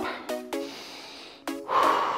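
Background music with a few held notes and no speech.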